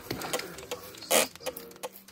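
Plastic trigger spray bottle being pumped repeatedly, with short clicks of the trigger and one loud hiss of spray about a second in.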